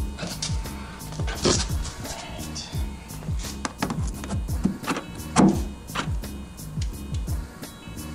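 Background music with a steady drum beat.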